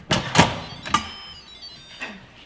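Electric pressure cooker's stainless lid being twisted loose and lifted off: a few metallic clicks and clanks, the loudest about half a second in, each followed by a brief fading metallic ring.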